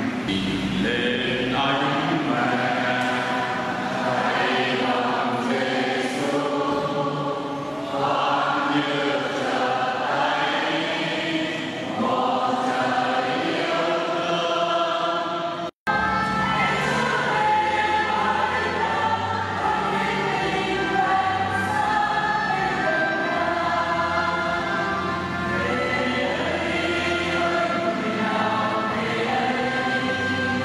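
Church choir singing a hymn. About halfway through the sound cuts out for an instant, and the singing resumes with a deeper accompaniment underneath.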